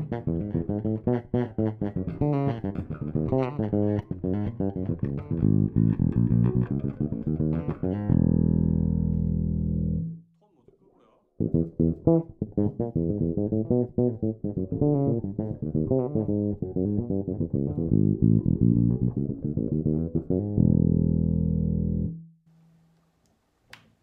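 Fender Z-serial Jazz Bass with Delano pickups and preamp, played fingerstyle in a tone demo. Two phrases of quick plucked notes each end on a long held low note that dies away, with a short silence after each.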